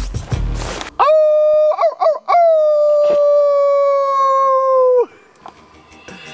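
A man imitating a wolf howl: one long high call about four seconds long, starting about a second in, wavering briefly near its start, then held steady and sliding slightly down before it cuts off.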